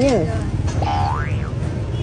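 A cartoon-style 'boing' sound effect: one pitched tone sliding up steeply and then quickly dropping back, about a second in, over background music.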